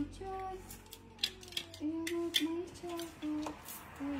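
A woman humming a tune in short held notes, with a few sharp clicks and clatters of clothes hangers being handled.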